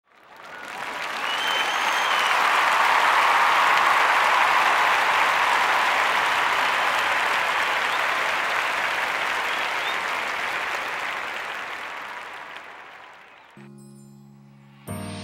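Crowd applause that swells in over the first couple of seconds, holds, then slowly fades away. A low sustained musical note comes in just before the end.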